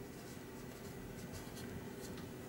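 Faint scratchy strokes of a paintbrush dabbing oil paint onto a primed cardboard panel, a few soft brushes in the second half.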